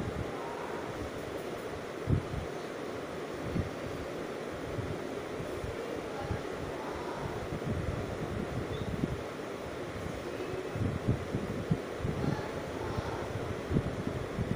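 Steady background hiss with scattered short, low bumps and rustles from movement close to the microphone.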